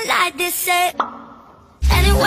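Looping meme song: a short vocal phrase, then a single cartoon "plop" sound effect about a second in that fades away before the loop starts again.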